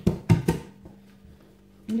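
A quick run of four or five sharp knocks as the thin, oiled dough is handled and pressed against the work surface.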